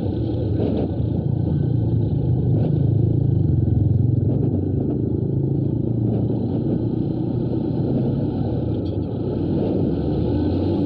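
Yamaha YTX 125's single-cylinder four-stroke engine running steadily as the motorcycle rides along, its note a little louder three to four seconds in and easing off briefly near the end.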